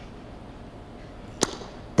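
A pause of low room tone, broken about a second and a half in by one short, sharp click.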